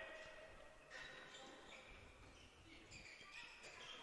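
Near silence: faint sports-hall sound of a handball game in play, with a ball bouncing faintly on the court floor.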